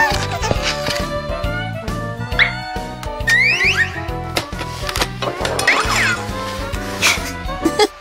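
Upbeat children's background music with cartoon sound effects, including a quick run of rising whistle-like glides a little past three seconds in. The music drops away just before the end.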